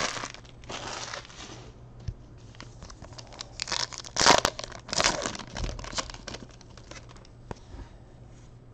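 Foil wrapper of a Topps Gold Label baseball card pack crinkling and tearing as it is ripped open by hand, with the loudest tears about four and five seconds in.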